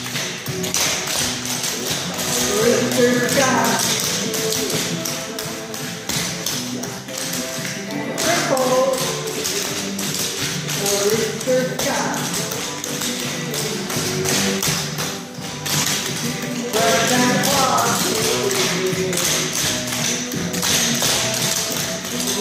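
Hard-soled dance shoes tapping out quick, rhythmic steps on a hardboard dance floor, with a melody playing throughout.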